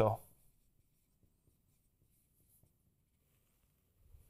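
Faint scratching of a dry-erase marker writing on a whiteboard, just after a man's spoken word ends.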